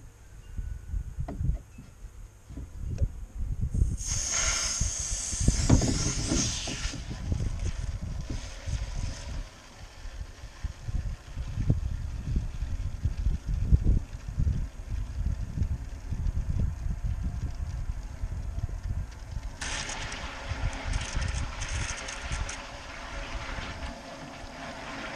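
Water running from a garden hose into a metal tray of rocks, hissing and splashing, louder for a few seconds about four seconds in and again near the end. Low irregular wind rumble on the microphone underneath.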